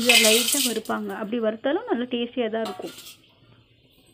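A handful of whole dry spices (cinnamon bark, cardamom pods, cloves and bay leaves) tipped into an empty metal kadai, clattering and rattling against the pan through the first second, with a smaller rattle near three seconds. The kadai has been heated and taken off the flame so that the spices dry-roast in it.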